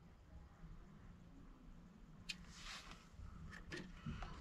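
Near silence: a faint low hum with a few small clicks and rustles as multimeter probes and furnace wires are handled, the sharpest click a little over two seconds in.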